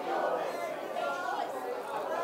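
Several voices of a congregation murmuring prayer and praise at low volume, overlapping one another.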